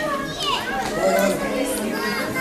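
Several young children's high voices chattering and calling out at once.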